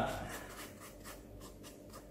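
A toothbrush scrubbing the damp fabric face of a 3M 9501V folding respirator mask: faint, quick, repeated scratchy brush strokes.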